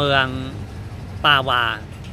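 A man speaking Thai in two short phrases, with a pause between them, over a steady low rumble.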